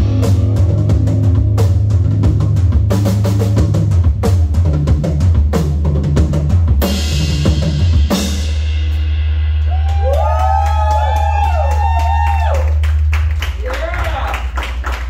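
Live rock band of drum kit, electric guitar and bass, with steady drumming up to a cymbal crash about seven seconds in. The drums then stop and a low bass note holds while guitar notes slide up and down over it. This is the end of the song, and the held note drops away shortly before the end.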